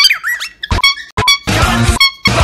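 A pet cockatiel's high-pitched honking calls, edited in time with a heavy metal song that cuts in and out around them: a sliding call at the start, then several short honks as the music comes back in.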